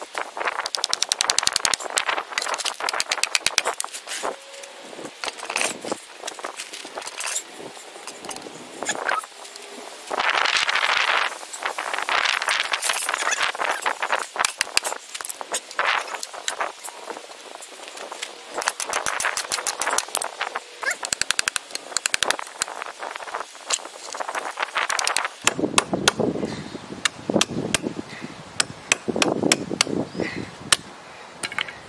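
Ratchet wrench clicking in rapid runs as a nut is worked on the end of a truck's steel front suspension arm, with a few bursts of scraping between runs. Near the end come sharper, heavier knocks, as from a hammer on the metal.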